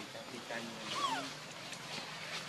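A macaque's brief call about a second in, a single cry that rises and then falls in pitch.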